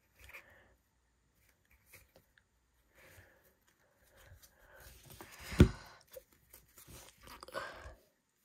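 A thick stack of trading cards being handled: faint sliding and rustling of card stock as the stack is split and its halves moved around, with one sharp click a little past halfway.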